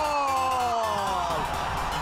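A football commentator's long drawn-out shout, held for about a second and a half and falling slowly in pitch, over background music.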